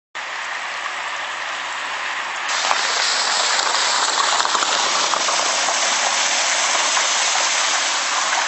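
Steady rush of running water: sewage overflow from a blocked sewer flowing along a street. It grows louder about two and a half seconds in.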